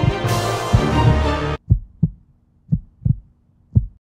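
Music cuts off abruptly about one and a half seconds in, then a heartbeat sound effect follows: low thumps in lub-dub pairs, about one pair a second, three beats' worth.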